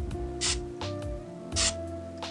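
Two short hisses from an aerosol can of PAM cooking spray, about a second apart, over background music.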